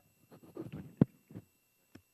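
Handling noise near a desk microphone: a few soft thumps and rustles, then a sharp knock about a second in, the loudest sound, another thump shortly after and a faint click near the end.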